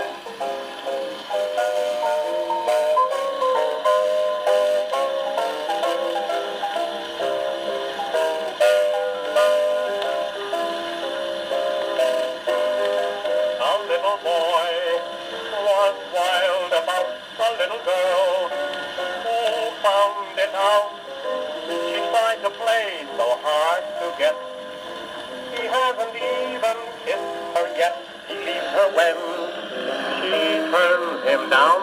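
Silvertone wind-up acoustic phonograph playing an old 78 rpm record with a steel needle: a band plays the opening, and a voice sings with vibrato from about halfway in. The sound is thin, with no bass, over a steady surface hiss.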